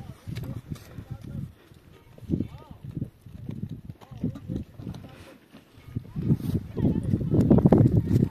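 People's voices talking, in speech the transcript did not catch.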